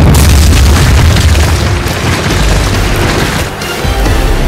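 A loud, deep boom and crash of shattering rock, a trailer sound effect laid over loud music, easing off a little near the end.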